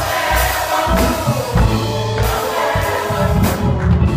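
Gospel song: singing into a microphone with a drum kit, the drums striking several times over the voice.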